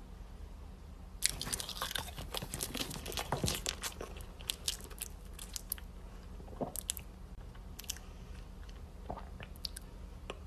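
Someone biting into and chewing a banana close to the microphone: a dense run of small wet mouth clicks for several seconds from about a second in, then a few scattered clicks, over a faint steady low hum.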